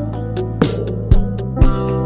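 Filipino rock band recording in an instrumental passage: guitars over a steady drum beat, with hits about twice a second and no vocals.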